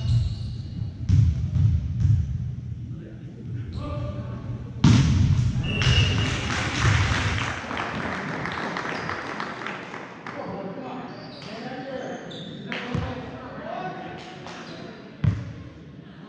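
Volleyball play in a gymnasium hall: ball thuds echoing, a sharp loud hit about five seconds in followed by several seconds of crowd cheering and shouting, and short sneaker squeaks on the court floor. Single ball impacts return later on.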